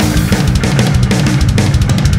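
Playback of a pop-punk backing track: a drum kit and electric bass, with a quick run of drum hits through the second half.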